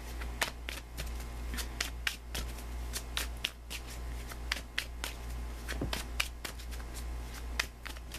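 A Thelema tarot deck being shuffled by hand: the cards slide and slap together in many quick, irregular clicks.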